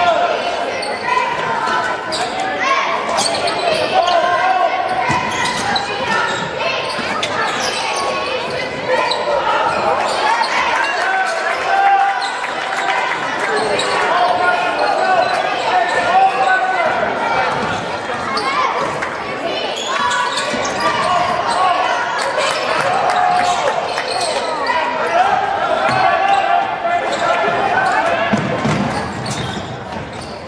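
Basketball game in an echoing gym: a ball being dribbled on the hardwood floor, mixed with people talking and calling out throughout.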